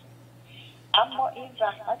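A man's voice resumes speaking about a second in, after a short pause, over a steady low hum.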